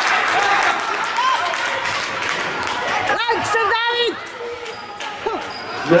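Indoor youth football game echoing in a sports hall: the ball being kicked and bouncing on the wooden floor in repeated sharp knocks, over shouting voices and crowd chatter. A burst of high, sliding squeals comes about three seconds in.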